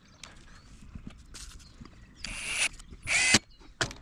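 Cordless impact driver driving a lag screw into a palm trunk through a stainless steel strap, in two short bursts about two and three seconds in.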